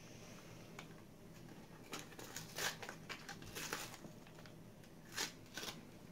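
Faint rustling, crinkling and small clicks of card-backed lip balm packaging being opened by hand, a few slightly louder tears or snaps about two to three and a half seconds in and again near the end.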